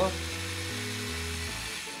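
Corded DeWalt electric drill running steadily as its bit bores a small hole into a wall for a wall anchor.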